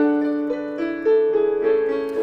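Yamaha digital piano playing the accompaniment to an 18th-century art song, with a new chord or note struck about every half second.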